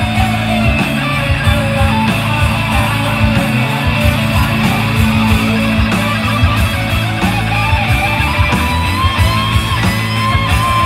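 Live band music, loud and continuous, with an electric guitar to the fore over keyboards and a low, steady beat.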